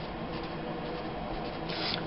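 A black Sharpie felt-tip marker rubbing across a paper photo page as a name is written, with a brief louder hiss near the end.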